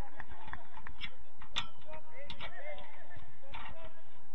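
On-pitch sound of a football match on artificial turf: players shouting short calls to each other, with scattered sharp knocks of the ball being kicked and of running feet.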